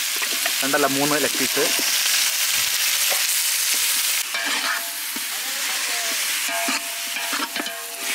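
Hot oil sizzling in a metal pan with spices frying in it: a steady hiss that eases a little about four seconds in.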